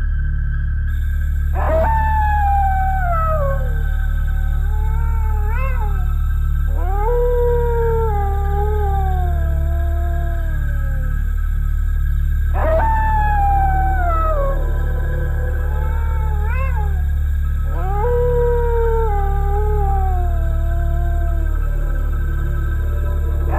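Spooky sound effect of long canine howls, each sliding down in pitch. The set repeats about every eleven seconds, like a loop, over a steady low eerie drone.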